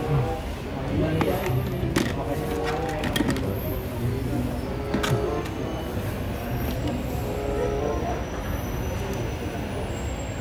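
Indistinct background voices with some music, and a few sharp clicks of diecast toy cars and plastic compartment boxes being handled.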